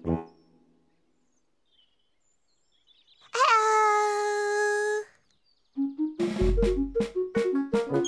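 A jazzy tune with brass and drums stops, and after about three seconds of near silence a high character voice calls out one long held note that scoops up in pitch at its start and lasts about a second and a half. The jazzy music starts again near the end.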